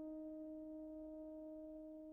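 Faint background score: one held keyboard note with its overtones, slowly dying away.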